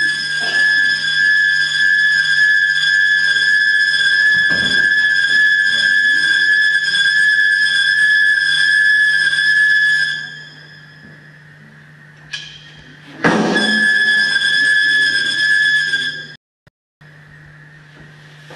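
A steady, high-pitched whistling tone is held for about ten seconds over a low hum, then cuts off suddenly. After a short sudden burst it returns for about three seconds.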